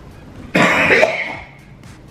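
A man coughs once, about half a second in, a sudden burst that trails off over about a second.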